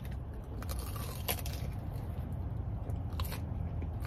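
Close-up eating sounds: a bite into a fried, potato-cube-coated Korean corn dog, then chewing, with scattered crisp crunches and a couple of sharper crackles about a second in and near the end. A low steady hum runs underneath.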